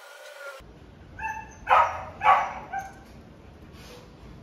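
A dog barking: a few short yips, then two loud barks about half a second apart, and one more short yip.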